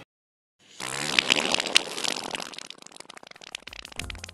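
A loud fart, most likely a sound effect, starting just under a second in after a moment of silence, loudest for about a second and a half and then trailing off. In the skit it is the sign of a man's upset stomach.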